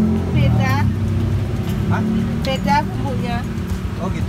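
A steady low motor hum, with short bits of people talking over it.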